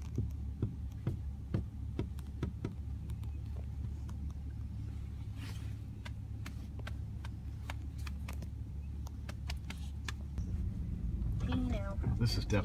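Car heard from inside the cabin, driving slowly over a rough, potholed road: a steady low rumble of engine and tyres, with frequent short knocks and rattles as it goes over bumps. The rumble changes a little about ten seconds in.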